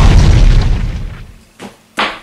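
Explosion sound effect played through small USB speakers from the clock's Arduino MP3 shield, marking that the hour has run out. Its rumble dies away over the first second or so, and a short knock follows at the end.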